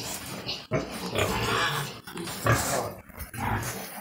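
Young sows grunting close by, about four short, rough grunts spread over a few seconds.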